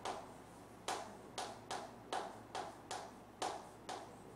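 Chalk tapping and scraping on a chalkboard as words are written: a run of about seven short, sharp strokes, roughly two a second.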